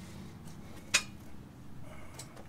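A single sharp metallic clink about a second in, metal striking metal, over a faint low background hum.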